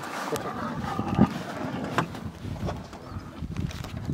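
A lioness struggling with a waterbuck she has pulled down. A drawn-out animal call comes in the first second or so, over rustling and a few sharp knocks from the struggle in the grass.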